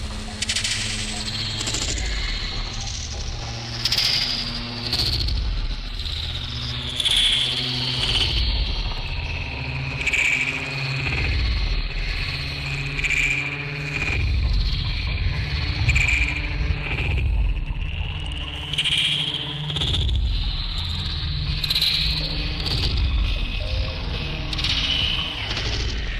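Electronic music played live on an Elektron Octatrack sampler-sequencer: a heavy, steady bass with a high lead tone that slides up and down in repeating phrases.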